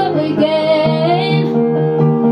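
A young woman singing one long held note into a handheld microphone over piano accompaniment; her voice stops about a second and a half in while the piano chords carry on.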